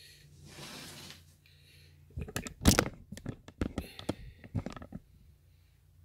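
A skillet being handled on a glass-top electric stove: a cluster of sharp knocks and scrapes from about two seconds in, lasting about three seconds, over a steady low hum.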